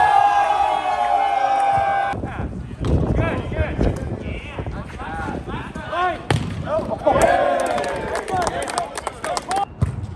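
Volleyball players and spectators shouting and calling out. A long held shout at the start cuts off abruptly about two seconds in. Later, short shouts mix with several sharp smacks of the ball being hit, most of them near the end.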